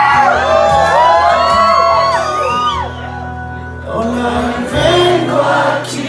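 Live rock band playing held guitar and bass chords through a PA, with many audience voices singing and whooping over it.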